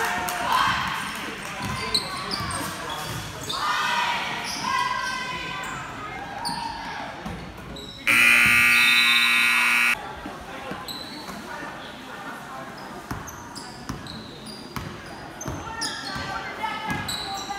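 A gymnasium scoreboard horn sounds once, a loud steady buzz lasting about two seconds that starts and stops abruptly about halfway through. Around it are a basketball being dribbled on the hardwood floor, short sneaker squeaks and spectators' voices echoing in the gym.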